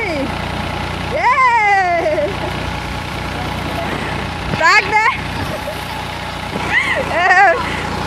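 New Holland 3600-2 tractor's diesel engine running steadily, driving a paddy thresher. Voices call out over it three times: about a second in, near five seconds and around seven seconds.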